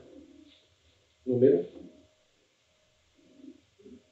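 A man's low voice sounds briefly about a second in, a short murmured word, with faint scratchy marker strokes on a whiteboard around it.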